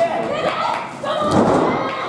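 A wrestler's body landing hard on the wrestling ring's canvas, a loud thud about a second and a half in, with shouting voices around it.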